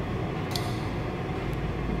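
Steady low hum of milk-room machinery, with one faint short click about half a second in.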